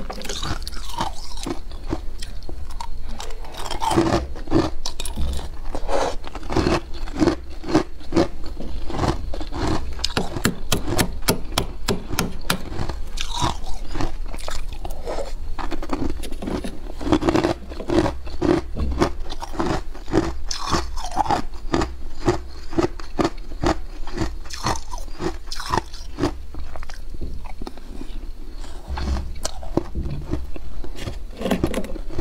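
Soft freezer frost crunching as it is scraped from the walls of a chest freezer and chewed, a dense run of crisp crackles with a rhythmic crunch about twice a second.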